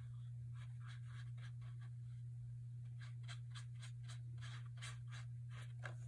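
A paintbrush stroking back and forth across paper, blending two wet colours together. It is a quick run of soft brushing strokes, about four a second, that grow louder about halfway through, over a steady low hum.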